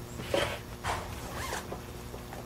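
A zipper being pulled in three short strokes.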